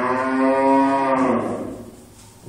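One long, held, voice-like call, steady in pitch, lasting about a second and a half before fading out.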